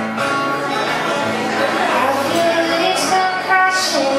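Acoustic guitar played live in a solo song, with a woman singing over it near the end.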